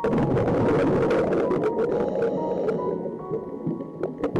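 Scuba diver's exhaled bubbles crackling and gurgling past an underwater camera, starting suddenly and easing about three seconds in, over background music with held notes.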